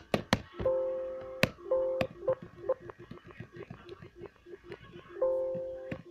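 A held two-note electronic tone that stops and starts several times, with a rapid run of sharp clicks and taps in the quieter middle stretch.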